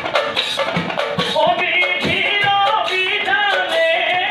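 Nagara naam, Assamese devotional singing: a man's voice sings a wavering line over a steady beat on large nagara kettle drums. The voice comes in about a second and a half in.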